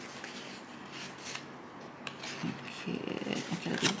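A deck of yellow paper cards being shuffled and split by hand: soft, irregular rustling and sliding of card against card, busier in the second half.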